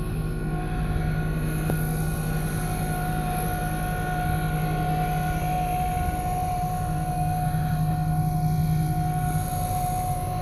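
Engine running steadily at constant speed: a continuous low drone with a steady higher whine over it.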